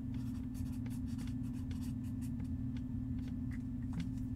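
Steady low hum with faint, scattered light clicks and scratchy rustles, as of something being handled or written on.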